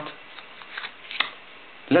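Playing cards being handled and a single card dealt face up onto the table: a few soft card rustles and one short sharp snap about a second in.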